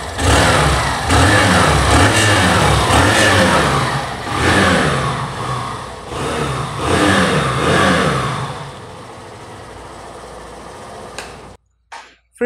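Hero Glamour XTEC 125's 125cc single-cylinder air-cooled engine, heard at the exhaust, revved in neutral: about four rising and falling blips of the throttle, then settling to a steady idle for the last few seconds. It sounds smooth and refined.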